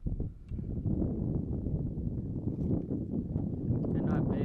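Wind buffeting the microphone: a steady low rumble that picks up about half a second in, with a few light knocks mixed in.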